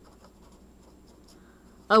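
Pen writing a word by hand on paper: a run of faint, quick scratching strokes.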